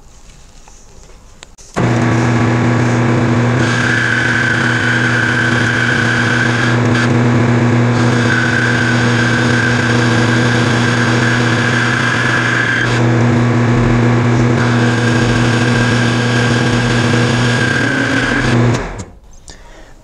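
Metal lathe running, turning a hardened steel shank down with a carbide tool in footage sped up five times: a steady machine hum that starts about two seconds in and stops shortly before the end. A higher whine comes and goes three times over it.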